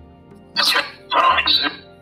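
A short, breathy, voice-like recording played back in two quick bursts, presented as a metaphony (EVP) voice, over soft background music with steady held tones.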